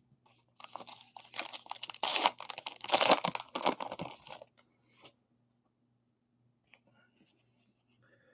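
Foil wrapper of a 2019 Topps Allen & Ginter card pack being torn open and crinkled by hand, a quick run of crackles and rips lasting about four seconds that stops near the middle.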